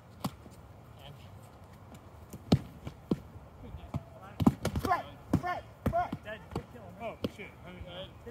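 Padded foam weapons striking shields and bodies in a melee: a few irregular dull thuds, then a quick cluster of hits about halfway through, with players shouting over them.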